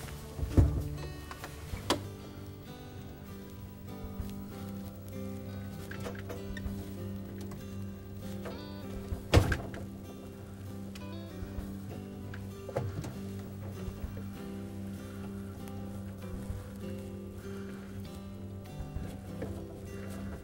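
Soft background music throughout, with a few sharp clicks and knocks from hands working the wire leads and their plastic inline connectors; the loudest click comes a little after halfway.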